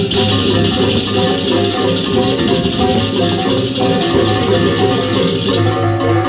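Music with melodic pitched notes over a steady shaker-like rattle; the rattle drops out shortly before the end.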